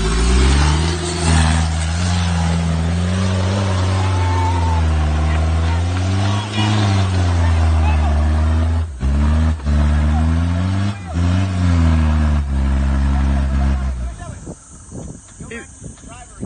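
Mitsubishi Delica L400 Space Gear's 2.8-litre intercooled turbo diesel engine labouring in low gear up a steep dirt slope, its revs rising and falling over and over with a few brief drops. The engine note falls away near the end.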